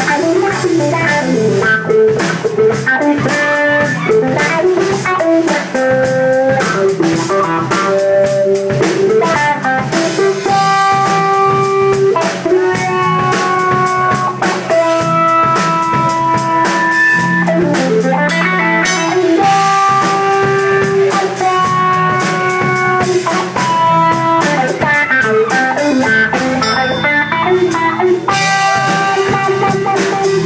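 Live instrumental funk jam: electric guitar playing a lead line of held notes, one bent and wavering about thirteen seconds in, over a drum kit and bass guitar.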